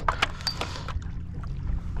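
Low, steady rumble of water and wind around a plastic fishing kayak, with a few light knocks from the hull or gear in the first half-second.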